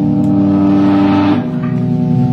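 Live band music: loud, held, droning chords from amplified instruments, with no singing, moving to a new chord about one and a half seconds in.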